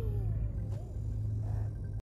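A steady low rumble, the engine drone of a spaceship cockpit in a film soundtrack. Faint wavering tones sound over it early on, and there is a light click about three-quarters of a second in.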